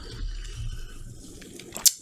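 A man drinking iced coffee from a cup: faint sipping and swallowing sounds, with a short click just before he speaks again.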